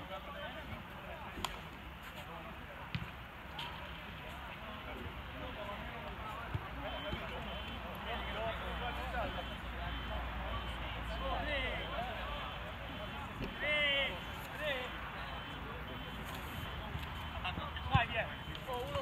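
Players' voices calling and shouting across a football pitch, heard at a distance, with one louder shout about fourteen seconds in.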